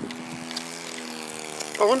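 RC model airplane's motor and propeller running at a steady, even pitch.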